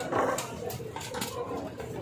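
Kitchen clatter of metal utensils knocking and scraping on a steel griddle counter, several sharp clicks a second, over a background of voices.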